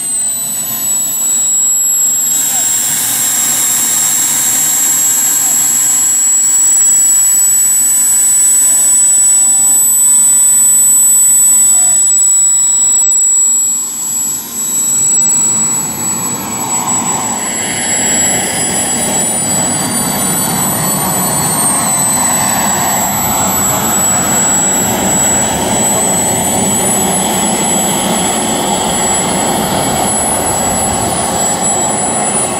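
Small gas-turbine engines of radio-controlled model jets running, with a steady high-pitched whine and a second high tone gliding up and down as the turbines spool. From about halfway a louder rushing noise joins the whine.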